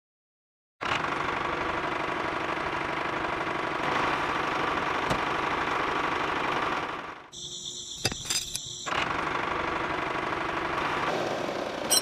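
Toy tractor's small electric motor and gears running with a rapid, steady rattle. It starts abruptly about a second in, falls away briefly past the middle with a few clicks, then runs again.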